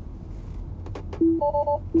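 Tesla dashboard chimes after two quick clicks: a short low tone, then three rapid two-note beeps. This is the warning that Autosteer will not engage, over steady low road rumble in the cabin.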